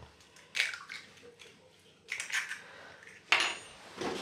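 A hen's egg being broken open over a ceramic bowl: light clicks and crackles of the shell being pulled apart and the egg dropping in, with a sharper knock a little after three seconds in.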